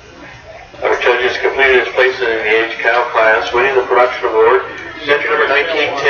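A voice talking loudly, starting about a second in and running on, with the words not made out.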